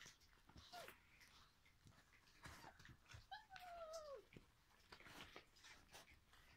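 Puppy whining: a brief falling squeak about a second in, then a longer whine in the middle that holds its pitch and then drops away, over faint rustling and small clicks of puppies moving about.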